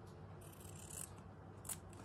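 Small scissors snipping through a fabric strip, faint: one soft cutting sound about half a second in, then a short crisp snip near the end.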